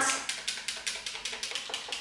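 A small bottle of Chanel Perfection Lumière Velvet foundation shaken rapidly in the hand to mix the liquid before use: a fast, even run of rattling clicks, about eight a second.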